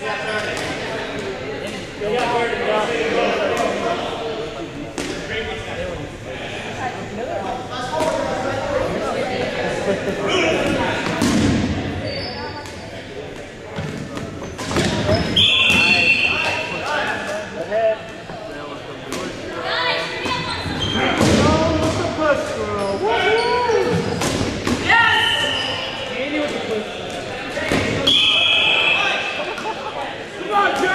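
Dodgeballs being thrown, smacking into players and bouncing on a wooden gym floor in quick, irregular hits, with players' shouts and chatter, echoing in the gymnasium.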